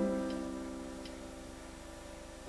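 Grand piano chord struck at the start and held, slowly decaying, with two faint ticks during the sustain.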